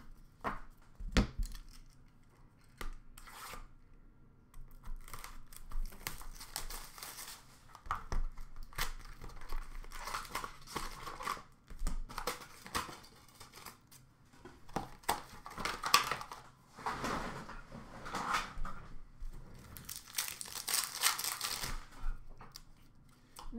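Hockey card pack wrappers being torn open and crinkled, with cards being slid and shuffled in hand, in irregular bursts of rustling with short pauses. There is a single knock about a second in, and the longest, loudest tearing comes near the end.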